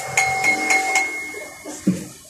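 Four quick metallic clinks, about four a second, with a bell-like ring that lingers after them, followed by a dull thump near the end.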